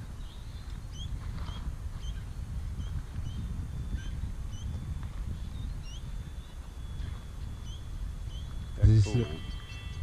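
Wind rumbling on the microphone in an open field, with a small bird giving short high chirps about twice a second.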